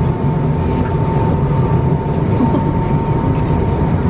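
Loud street-party DJ sound system played into a crowd, picked up as a dense, muffled low rumble with a steady high tone running through it, and crowd voices mixed in.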